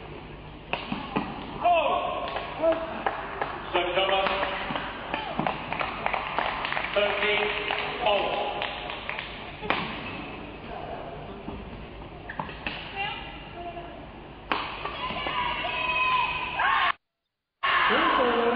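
Badminton rally: sharp, irregularly spaced racket strikes on the shuttlecock, with voices calling out over the play. The sound drops out completely for about half a second near the end.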